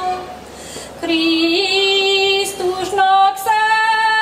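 A woman singing a Csángó Hungarian folk song solo and unaccompanied, in long held notes. A held note ends right at the start, and after a short pause a new phrase begins about a second in, stepping up in pitch.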